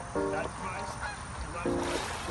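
Pond water splashing and churning as a person is dunked under in a baptism, with a few short higher-pitched calls in the first half. Soft synth music plays underneath.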